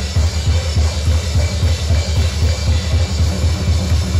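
Live band music driven by a drum kit, the bass drum beating about three to four times a second under a busy, full mix.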